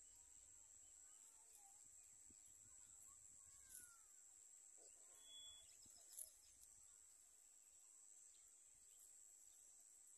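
Near silence: a faint, steady high-pitched insect chorus, with a few faint bird chirps in the first half.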